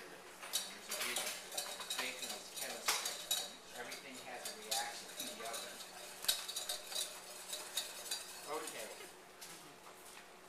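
Metal kitchen utensils, a wire whisk among them, clinking and scraping against stainless steel saucepans in irregular clinks throughout.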